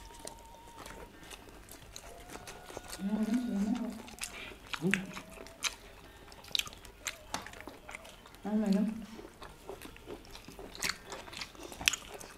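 Several people eating a meal with their hands, with scattered chewing and lip-smacking clicks. Three short low voice sounds come in, a little before the middle, just after it and again later.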